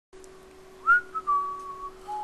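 A person whistling a few notes of a tune, starting about a second in with a quick upward slide and then a long, slowly falling held note, over a faint steady hum.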